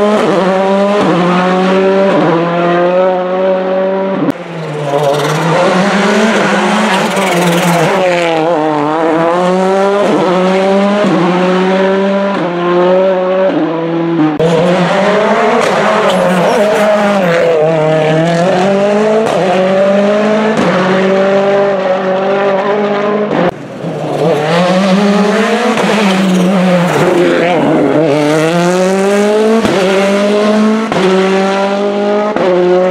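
Rally car engines at full throttle, revving up through the gears in repeated rising sweeps that drop sharply at each upshift, then falling away as the cars slow for bends. Several cars are heard in turn, with abrupt cuts between them.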